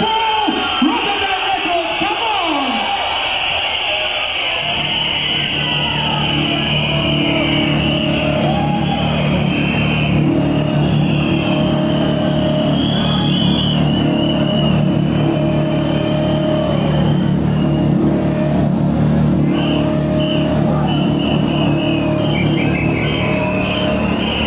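Loud Dutch hardcore dance music played from a DJ set over a large sound system. The first few seconds hold sweeping pitch glides, then about five seconds in a dense, fast beat with a heavy bass drum kicks in and runs steadily under short repeated synth notes.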